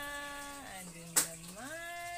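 A voice singing long, steady held notes that drop to a lower note and then rise back up. A single sharp click sounds a little over a second in.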